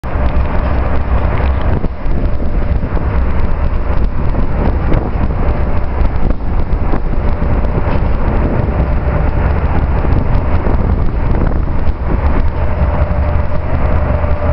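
Steady wind rumble on the microphone over the hum of road traffic.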